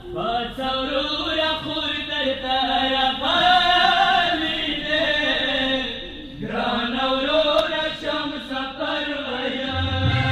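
Pashto noha, a Shia lament, being chanted: long, wavering held notes, with a brief break about six seconds in.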